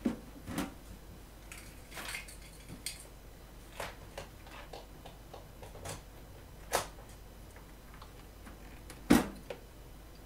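Hard objects being handled and set down on a cluttered workbench: a string of separate knocks and clicks, the loudest knock about nine seconds in.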